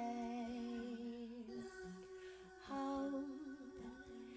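A woman humming a slow melody without words into a handheld microphone, in long held notes. It softens about halfway through and comes back louder on a wavering note near the end.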